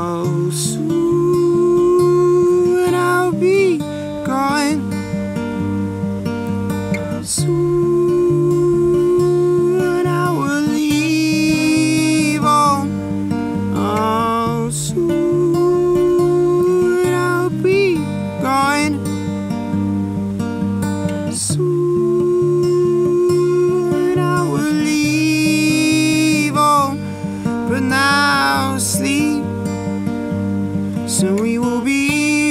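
Steel-string acoustic guitar played in a steady, even rhythm. Over it, a voice sings long held notes without clear words, with wavering melodic phrases in places.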